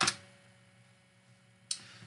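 A single computer keyboard keystroke, the Enter key running a typed terminal command, followed by quiet room tone with a faint steady hum. A short breath near the end.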